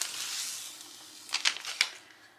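Clear plastic contact paper being peeled off its backing sheet by hand. A hissing, tearing rustle comes in the first second, then a quick run of crinkling crackles as the stiff sheet is handled.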